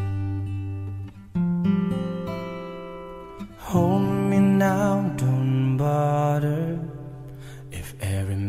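Slow acoustic guitar music: plucked, ringing notes and chords held for a second or two at a time, swelling again about four seconds in.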